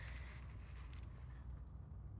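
Faint outdoor background: a steady low rumble with no distinct sounds standing out.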